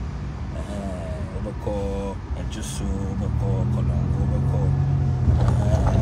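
Car interior while driving in city traffic: a steady low engine and road rumble. A low hum swells during the second half.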